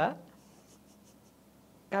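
A man's speaking voice trails off, then comes a pause of about a second and a half with only faint room tone and a few faint scratchy sounds, before his voice resumes near the end.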